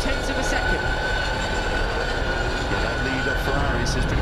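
Ducati V21L electric racing motorcycles at speed, their motors giving one high, steady whine over a rush of tyre and wind noise.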